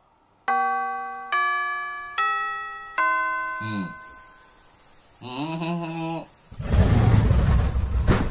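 School chime of the kind rung in Japanese classrooms: four bell notes struck less than a second apart, each ringing and fading, marking the end of the school day. Short voice-like calls follow, and near the end a loud burst of rushing noise is the loudest sound.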